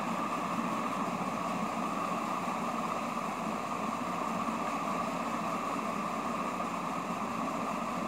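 Steady mechanical hum with a hiss, unchanging throughout, like a running fan or air-conditioning unit in the room.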